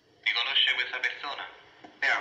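A voice speaking, thin and telephone-like in tone. It starts suddenly about a quarter second in, after near silence.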